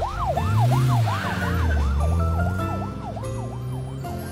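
Cartoon police-car siren, a fast wail rising and falling about three times a second over a low rumble. It grows fainter toward the end, as if driving away.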